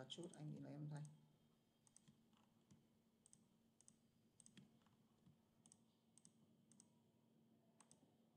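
Faint computer mouse clicks, an irregular run about every half second with some in quick pairs, as lines of text are selected one by one. A low voice sounds briefly at the start.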